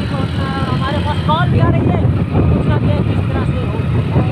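Motorcycle running steadily on the road, with a loud low rumble of engine and wind buffeting the microphone, under a voice.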